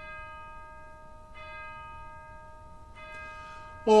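A bell struck three times at an even pace, the same ringing tone each time, each strike sounding on until the next.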